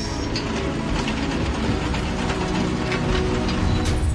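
Factory machinery clattering: a fast run of mechanical clicks and clanks over a steady low rumble, with one louder hit near the end.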